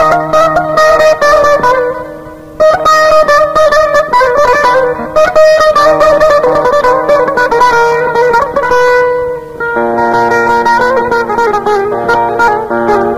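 Kurdish folk music played on a plucked string instrument: a run of rapidly picked notes, with a brief lull about two seconds in.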